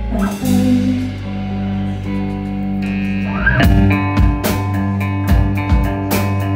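Live rock band playing an instrumental passage: electric guitar and bass guitar holding sustained notes, then the drums come back in about three and a half seconds in with kick-drum and cymbal hits in a steady beat.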